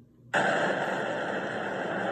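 Cartoon rocket launch sound effect: a loud, steady rushing noise that starts suddenly about a third of a second in, played through a tablet's speaker.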